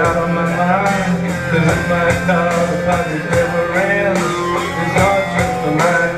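Live rock song in an instrumental break between sung lines: guitar playing over a steady beat.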